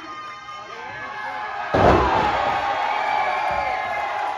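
A wrestler landing hard on the ring: one loud thud of a body hitting the mat and boards, a little under two seconds in, while the crowd shouts and cheers.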